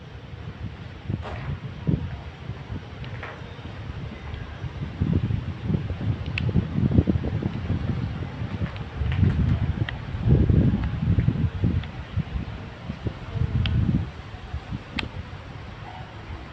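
Wind buffeting the microphone in irregular low rumbling gusts, strongest around the middle of the stretch, with a few faint clicks.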